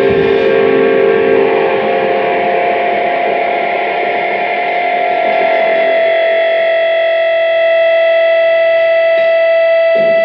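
Electric guitar through distortion and echo, a held note ringing on and growing stronger and steadier over several seconds, with a fresh strum just before the end.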